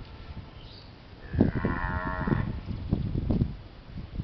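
One drawn-out animal call lasting a little over a second, its pitch rising slightly then falling, over irregular low thumps and rumble.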